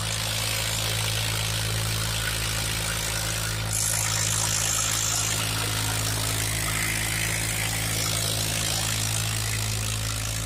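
Farmtrac 60 tractor's three-cylinder diesel engine running steadily under load as it pulls a disc harrow through soil. A brief high whistle-like tone cuts in about four seconds in and stops after a second or two.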